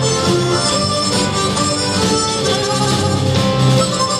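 Harmonica playing the lead melody of an instrumental tune, backed by a live band of electric guitar, bass guitar, violin and drums.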